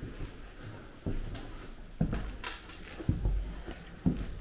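Footsteps on bare wooden floorboards: a few dull thumps about a second apart.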